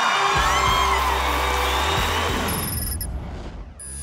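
Studio audience cheering and applauding with whoops over the closing music of a song. It all fades out about three seconds in.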